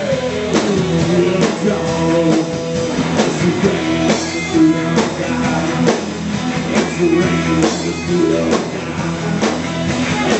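Live rock band playing: electric guitars over bass guitar and a drum kit, with guitar notes bending in pitch and regular drum hits.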